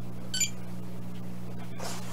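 A single short electronic beep about half a second in, from a Spektrum DX6 radio transmitter being switched on, over a steady low hum.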